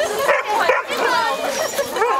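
Hungarian vizsla giving a couple of short barks in the first second, among people chatting.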